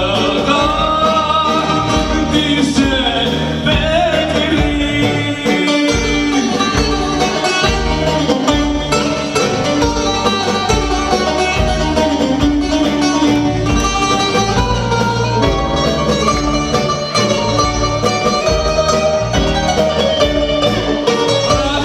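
Live Greek popular band music: a male singer over bouzouki, keyboards and drum kit, playing a steady dance rhythm.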